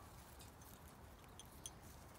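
Near silence: faint outdoor background with a low rumble, and two faint short high ticks about one and a half seconds in.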